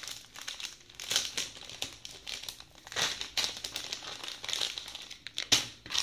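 Packaging crinkling and rustling as it is handled, in irregular strokes, with one sharp click near the end.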